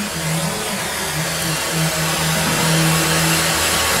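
Gas torch flame hissing steadily as it heats the lead solder stick and fender panel for body leading, with a low hum that comes and goes.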